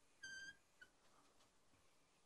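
A marker squeaking on a whiteboard while writing: one short, high squeak about a quarter second in, then a brief chirp, over near silence.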